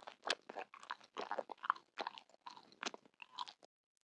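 Close-miked chewing and biting of a glossy orange candy: a quick run of crisp crunches and wet mouth clicks that stops about three and a half seconds in.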